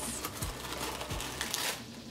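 Tissue paper rustling and crinkling as it is peeled back and unfolded inside a cardboard box, louder near the start and about one and a half seconds in.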